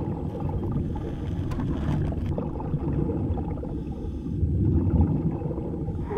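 Low, muffled underwater rumble of water noise picked up by a submerged camera, steady with a slight swell near the end.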